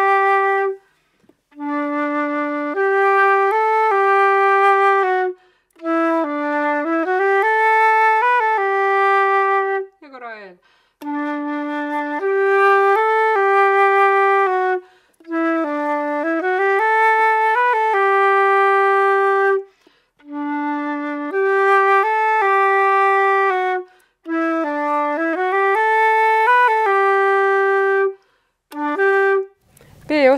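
Silver concert flute playing a slow waltz melody from an Estonian bagpipe tune. It goes in short phrases of a few seconds each, with brief breath gaps between them.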